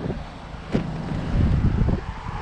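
Front door latch of a 2020 Jeep Wrangler Unlimited clicking open once, followed by wind buffeting the microphone as the door is swung open.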